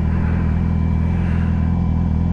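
2017 Yamaha R6's inline-four engine idling at a steady speed. The bike is overheating, and the idle is one the rider suspects is running high.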